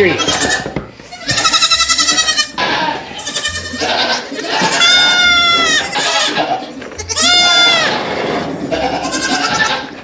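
Nigerian Dwarf goat kids bleating: about five high, quavering calls one after another, each lasting about half a second to a second and a half.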